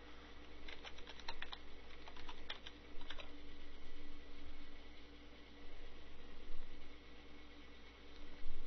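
Computer keyboard typed in a quick run of about a dozen key clicks from about a second in to just past three seconds, a new layer's name being keyed in. A faint steady hum runs underneath.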